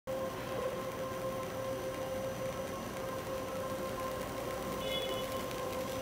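Texwrap shrink-wrapping line running: a steady machine hum with a constant tone over the whir of the conveyor. A brief high-pitched beep about five seconds in.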